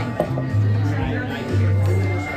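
Acoustic guitar being played on stage, with low bass notes ringing out twice, each held for about half a second, under voices talking in the room.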